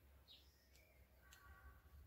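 Near silence: faint outdoor background with a low hum and a faint bird chirp about a third of a second in.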